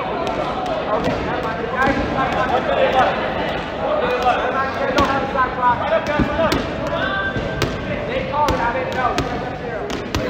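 Indistinct chatter from several players, with scattered sharp bounces of dodgeballs hitting the hard gym floor.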